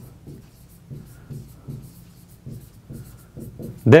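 Marker pen writing a word on a whiteboard: a quick series of short, faint strokes. A man's voice begins right at the end.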